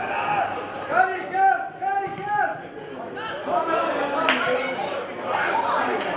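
Men shouting and calling out on and around a football pitch, with a long drawn-out call about a second in. One sharp knock about four seconds in.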